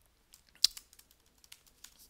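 Computer keyboard keystrokes: a handful of short, scattered key clicks as a word is typed, one of them louder in the first half.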